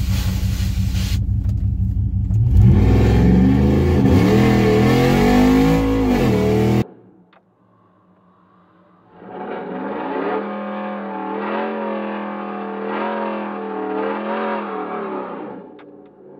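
Cammed Ram truck's Hemi V8 idling with a deep rumble, then going to full throttle about two and a half seconds in, its pitch climbing and dropping back at the gear changes, until the sound cuts off suddenly midway. After a short near-quiet gap the engine is heard again, more muffled, pulling hard for about six seconds before falling away near the end.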